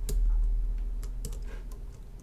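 Computer keyboard being typed on: a run of irregular keystroke clicks.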